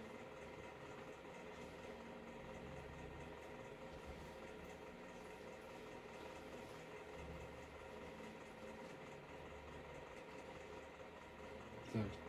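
Faint rustling of secondhand fleece garments and jackets being handled and turned over, over a steady faint hum.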